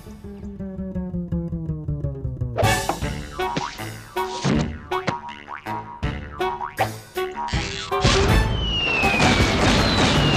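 Cartoon score with comic sound effects. A slowly falling musical phrase comes first, then a run of quick sliding whistles and sharp hits. About eight seconds in, a loud rushing noise sets in with a falling whistle through it.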